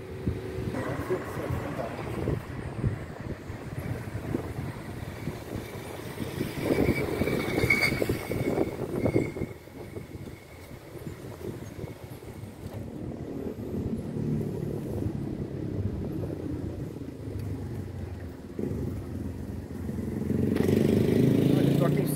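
City street traffic: motor vehicles passing, with one passing louder partway through.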